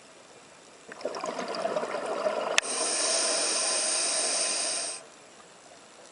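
Scuba diver breathing through a regulator underwater: a crackling, bubbling exhalation starting about a second in, then a click and a steady hiss of inhalation through the demand valve for about two and a half seconds that stops sharply.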